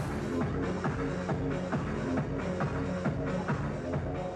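Techno track playing through a club sound system, driven by a steady kick drum at about two beats a second. The sound shifts abruptly about half a second in.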